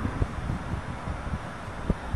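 Wind buffeting the microphone: an irregular low rumble with uneven gusty thumps.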